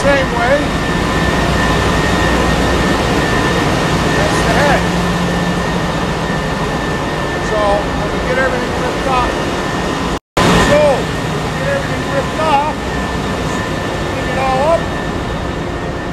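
Steady, loud ship's engine-room machinery drone, a deep rumble with a few steady tones above it, with scattered short bits of voice over it; the sound drops out for an instant about ten seconds in.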